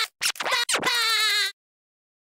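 Record-scratch style sound effect: a few quick stuttering scratches, then a longer wavering one that cuts off abruptly about a second and a half in.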